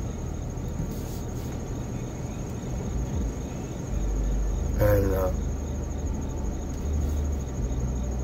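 Crickets trilling steadily in a high, thin tone outside a parked car, over a low steady rumble. A brief murmur of a man's voice comes about five seconds in.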